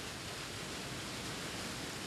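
Steady rushing of water pouring through a log flume sluice, an even wash of noise with no distinct events.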